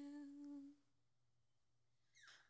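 A woman's unaccompanied solo voice holds a soft, steady note that fades out before a second in, leaving a pause of near silence between phrases.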